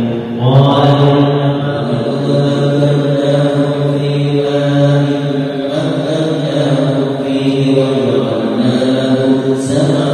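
A single man's voice chanting Quran recitation in long, held melodic phrases, with a few short breaks between phrases.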